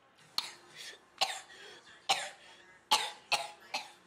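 A child's short coughs, about six of them spaced unevenly through the few seconds.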